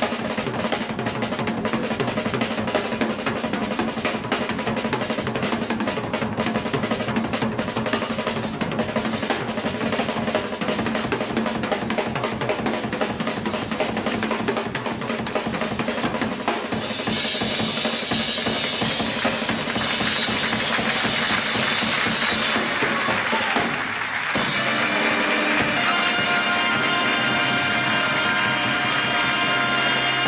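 Jazz drum kit solo: fast, continuous snare-drum rolls and fills with bass drum and cymbals. About 25 seconds in, the drumming gives way to a big band holding a loud sustained chord.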